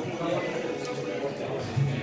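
Voices and background music in a pub dining room, with a louder voice starting near the end.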